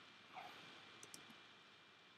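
Near silence, with a short faint sound a little way in and then a few faint keystrokes on a computer keyboard about a second in.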